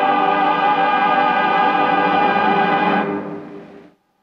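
Operatic tenor holding a long final note with vibrato over orchestral accompaniment. The music stops about three seconds in and dies away into silence.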